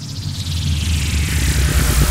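Intro sound effect: a rushing whoosh that swells steadily louder over a deep, rumbling bass.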